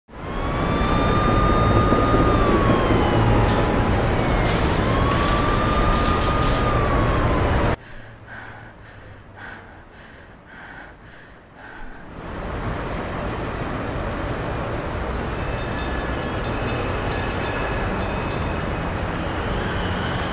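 Traffic noise with a siren wailing, rising and falling twice, cut off abruptly about eight seconds in. A much quieter stretch of soft, even pulses follows, then from about twelve seconds a steady wash of noise.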